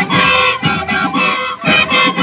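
A marching flute band playing a tune together, loud and close.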